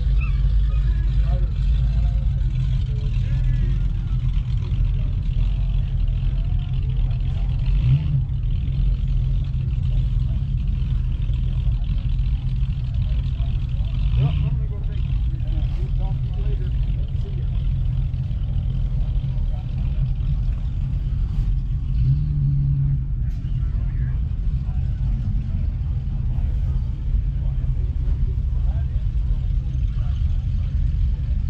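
A steady, low engine rumble that runs on without a break, with brief rises in pitch a few times, under faint chatter of people talking.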